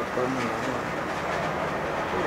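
A person speaking in short phrases over a steady background noise.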